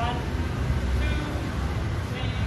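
A steady low rumble of outdoor background noise, with brief faint snatches of a voice at the start and about a second in.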